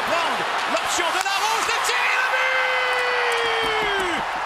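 Excited French-language hockey play-by-play calling a goal: rapid commentary that breaks into one long held shout near the end, over crowd noise.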